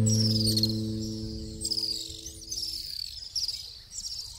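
A guitar chord rings out and fades away over the first two to three seconds. Short, high chirping phrases repeat about once a second throughout, typical of night-time insects.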